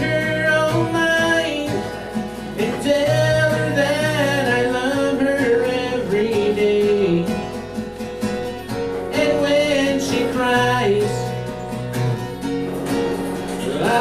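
A man singing a country song live while playing acoustic guitar. He sings in phrases with short gaps between the lines, and the guitar keeps playing under them.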